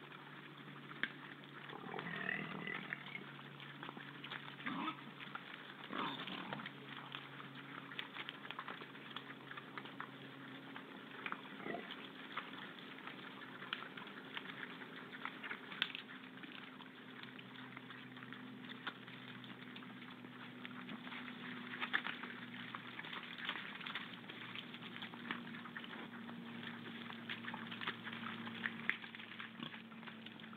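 A herd of wild boar feeding, with many small clicks and crunches of eating and rooting and a few short grunts. A steady low hum runs underneath.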